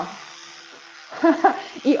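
Electric toothbrush running in the mouth while brushing teeth: a steady low hum, then overtaken by muffled speech about a second in.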